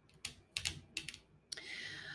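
Fingertips and fingernails tapping on tarot cards laid out on a cloth-covered table: a few light, quick clicks, then a soft hiss in the last half second.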